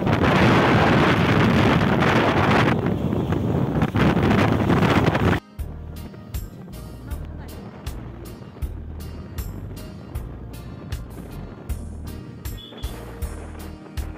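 Wind buffeting the microphone while riding on a two-wheeler, cut off suddenly about five seconds in. After the cut comes background music with a steady beat.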